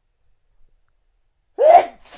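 A man sneezing once, short and very loud, about one and a half seconds in; the sneeze is an allergy attack.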